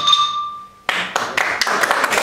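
The xylophone's last notes ring and fade out. About a second in, a small audience breaks into applause.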